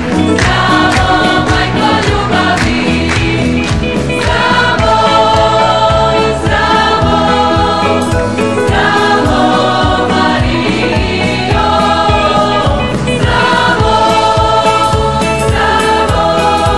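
A choir singing an upbeat song over a steady beat.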